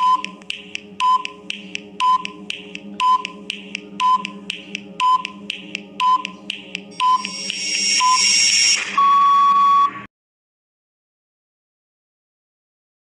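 Countdown timer sound effect: a tick and short beep about once a second over a steady drone. It swells near the end and closes with a long buzzer tone about a second long as time runs out.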